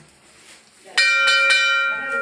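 Temple bell rung before the deity, starting suddenly about halfway through with a few quick strikes close together and a clear ringing tone that carries on.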